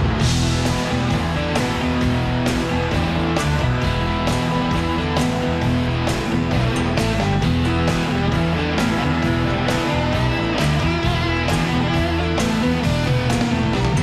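Rock band playing live, an instrumental passage with no singing: electric guitars over bass and a steady drum beat.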